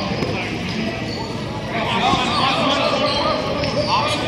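Voices of players shouting and calling out, echoing around a large indoor sports hall, over the general noise of play; the calls pick up about halfway through.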